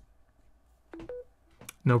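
A short electronic beep of two rising notes about a second in, the chime that signals wireless charging has started on the Samsung Galaxy Z Flip 4 as it sits on a charging pad. A light click at the start from the phone being set down on the pad.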